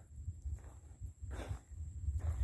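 A pause between words: a faint, uneven low rumble on the outdoor microphone, with one short faint breath-like hiss about one and a half seconds in.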